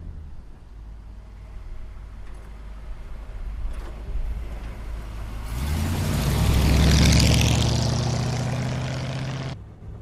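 A 1949 Mercury's 255 ci flathead V8 with dual exhaust through Cherry Bomb mufflers, heard as the car drives by. A low, steady engine note and tyre noise grow louder, are loudest as the car passes about seven seconds in, then fade before the sound cuts off near the end.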